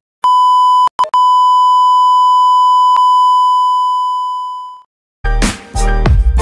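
A loud, steady electronic beep at one pitch, broken off briefly about a second in, then fading out just before five seconds. Music with a heavy beat starts near the end.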